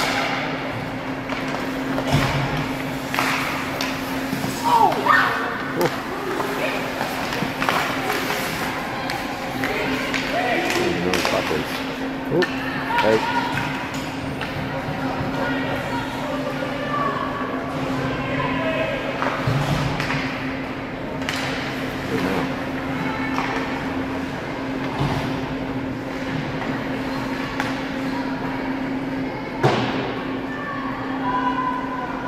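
Ice hockey rink ambience during live play: scattered sharp clacks and knocks of sticks, puck and boards, with indistinct distant shouts from players and spectators over a steady low hum.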